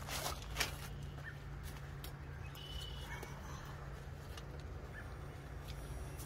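Quiet handling of a zucchini plant while reaching in to cut a fruit free: a few short clicks and soft rustles, the sharpest about half a second in. Several faint short chirps come and go over a steady low hum.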